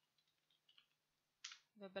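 Near silence with a few faint computer keyboard key clicks as a word is typed. A short breath and the start of speech come near the end.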